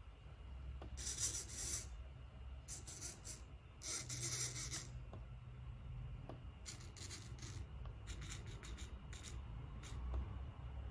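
MG996R metal-gear hobby servos of a small robot arm whirring in short bursts as they turn to new angles, about six rasping spurts, each under a second, over a steady low hum.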